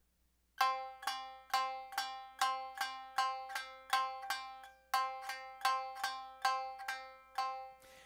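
Tsugaru shamisen string struck repeatedly with the bachi: a steady run of even strokes on the same note, about four or five a second, each with a sharp attack. It starts about half a second in and stops shortly before the end.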